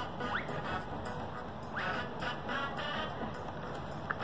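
Cartoon soundtrack playing from a tablet's speaker: music with pitched, squawky sound effects and two quick rising whistle-like glides, one just after the start and one a little before the middle.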